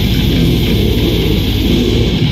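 Live metal band playing loud: distorted electric guitar and bass guitar over fast, evenly repeated drum strokes.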